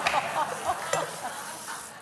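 Laughter from a man and a studio audience after a joke, over a steady hiss that cuts off suddenly near the end.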